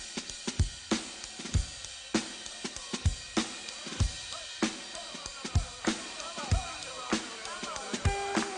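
Funk drum kit playing a groove with no other instruments: syncopated kick drum and snare backbeat under hi-hat and cymbals. Some higher, wavering sounds join over the last few seconds.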